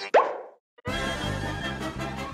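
A short cartoon pop sound effect with a quick upward swoop in pitch, then a brief silence before orchestral cartoon closing-theme music starts a little under a second in.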